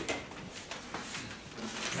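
Paper rustling as a sheet is picked up and handled, with a few small knocks.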